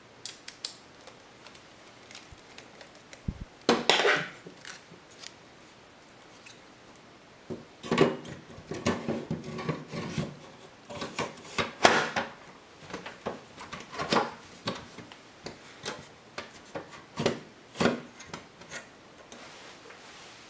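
Hard drive being slid into a drive bay of a Synology DiskStation DS413j's metal drive cage: a run of scrapes, clicks and knocks, busiest about four seconds in and again from about eight to twelve seconds in.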